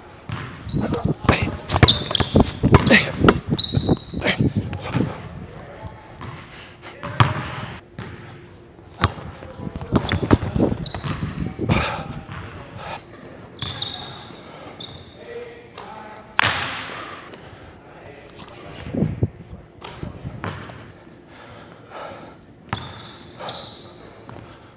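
A basketball being dribbled on a hardwood gym floor, with a fast run of bounces in the first few seconds and more scattered bounces later, during one-on-one play. Basketball sneakers squeak briefly on the court several times as the players cut and defend.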